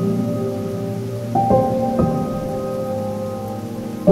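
Ambient Eurorack modular synthesizer music: Expert Sleepers Disting EX sample-player notes, sequenced by Marbles and run through Mutable Instruments Clouds and a T-Rex Replicator tape delay. Held tones slowly fade, with a few new notes entering about a second and a half and two seconds in, over a faint grainy hiss.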